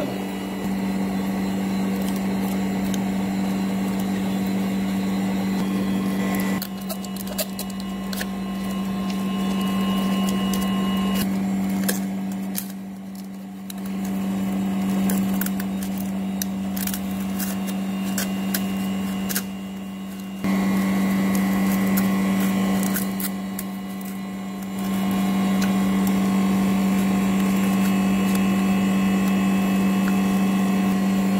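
Steady hum of a freezer separator machine running. Scattered light clicks and scrapes come from a plastic separator card prying a frozen phone frame off its screen. The hum dips and comes back a few times.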